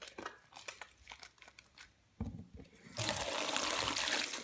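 Soapy lathered hands squishing and rubbing together with soft wet clicks. A low thump comes just after two seconds, and about three seconds in a tap starts running in a steady rush of water into the sink.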